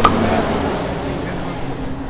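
A single sharp hand slap as two men clap their hands together in a handshake, over steady street traffic noise.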